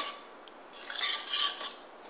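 A cooking utensil scraping and stirring against a pan of white sauce: a short quiet spell, then about a second of rasping scrape that fades out near the end.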